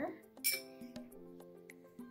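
A metal spoon clinks sharply once against a glass about half a second in, followed by a few faint taps, over soft background music.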